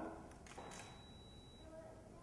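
A faint camera shutter click about half a second in as the test shot is taken, followed by a thin, high, steady tone lasting about a second.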